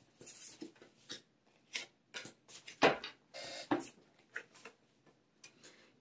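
Tarot cards being handled, turned over and laid down on a table: an irregular string of soft clicks and card slaps, the strongest about three seconds in.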